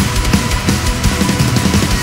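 Heavy metal drum instrumental: fast, dense drumming with rapid kick-drum strokes, toms and crashing cymbals, over a faint sustained note.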